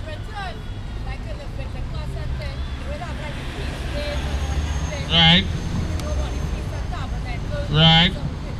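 Street traffic rumbling, swelling as a vehicle passes, with two short vehicle horn toots, one about five seconds in and one at the end, and faint voices in the background.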